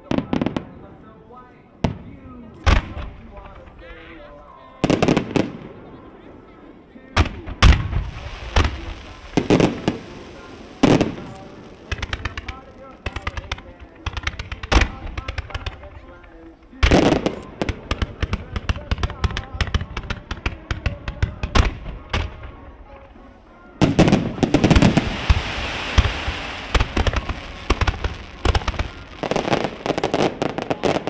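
Aerial firework shells bursting one after another, sharp bangs with crackling between them, packing into a dense barrage near the end. Music plays faintly underneath.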